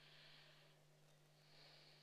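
Near silence: faint room tone with a low steady hum and two soft puffs of hiss.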